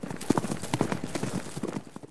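Sound effect of animal hooves: a rapid run of clattering hoof strikes on hard ground, growing fainter toward the end.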